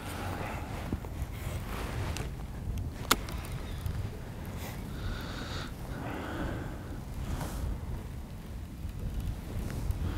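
Low, steady rumble of wind outdoors on open water, with one sharp click about three seconds in.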